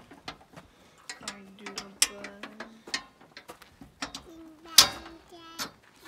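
Metal clicks and rattles of a trailer's compartment door latch being worked and locked by hand, with a sharp click a little before the end.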